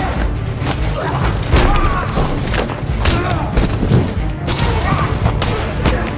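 Film fistfight sound effects: a rapid run of punches, blows and thuds, about two a second, over an orchestral score.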